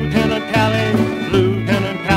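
A 1971 country record playing from a 45 rpm single: a stretch with guitar and band accompaniment between sung lines.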